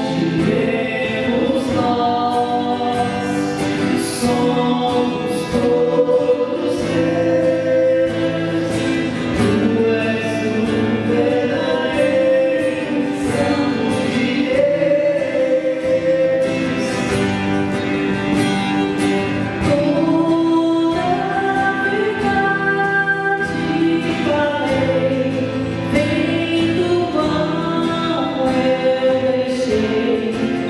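A woman and a man singing a Catholic hymn in Portuguese together, with a steadily strummed acoustic guitar accompanying them.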